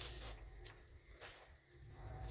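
Faint rustling and light clicks of paper being handled, as photos are drawn out of an opened envelope.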